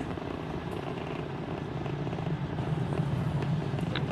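Falcon 9 first stage's nine Merlin 1D engines firing during ascent, heard as a steady, noisy rumble that grows slightly louder.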